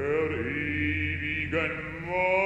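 A male opera singer singing a sustained phrase with vibrato, a new note starting about a second and a half in, over a steady low orchestral bass.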